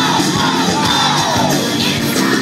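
A band playing live and loud with a lead vocal, and the crowd yelling along, recorded from within the audience.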